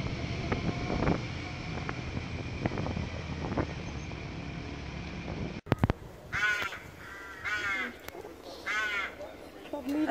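A motorcycle running at low speed, its engine and wind noise picked up by a camera on the bike, which cuts off suddenly a little over halfway through. Then a bird calls three times, each call a short run of pitched notes.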